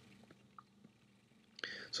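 Near silence, room tone with a faint low hum, then a brief hiss and a man starting to speak ("so") near the end.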